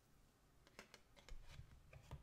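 Faint clicks and taps of a tarot card being picked up from a wooden table and handled, a quick cluster of small sounds in the second half.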